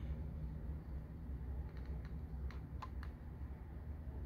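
A few faint, light clicks of a plastic blister-pack toy car card being handled, scattered through the middle, over a steady low hum.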